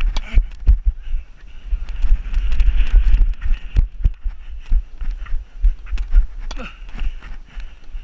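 Quick irregular footsteps of a tennis player running on a hard court, picked up by a head-mounted camera along with heavy low rumble from the wearer's movement and wind on the microphone.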